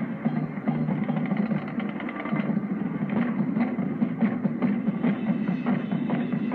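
High school marching band playing on the field: brass, with sousaphones, over a drum beat. The sound is muffled, with no high treble, as on an old videotape.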